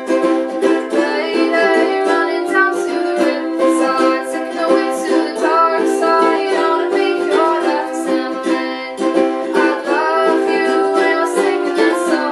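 Two ukuleles strummed together in a steady, even rhythm, with a soft voice singing along over the chords at times.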